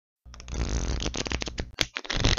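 A deck of playing cards being shuffled: a rapid, dense run of card clicks that starts after a brief silence, with one sharp snap near the end.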